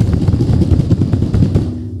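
Rapid, irregular drum roll of hands beating on a tabletop, thinning out near the end.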